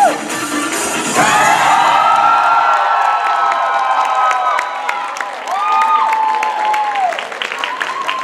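Crowd cheering at the end of a cheerleading routine as its music stops: two long held shouts of cheering, with scattered clapping from about three seconds in.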